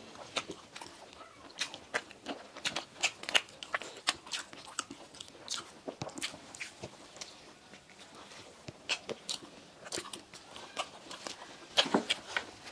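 Close-miked chewing and mouth sounds of people eating soft cream-filled donuts: irregular small wet clicks and smacks as they bite and chew.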